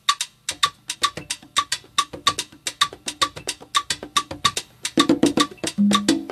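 Opening of a Latin dance track: a wood-block rhythm of quick, evenly spaced strikes, about four a second. Lower drums join about half a second in, and bass and fuller band enter about a second before the end.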